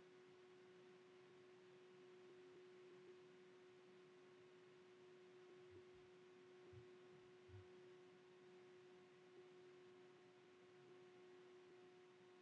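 Near silence: room tone with a faint steady electrical hum and a few faint low thumps around the middle.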